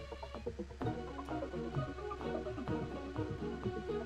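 Sampled string ensemble in a layered arrangement: a sustained tremolo bed with short staccato and plucked pizzicato notes over it. The texture thickens about a second in.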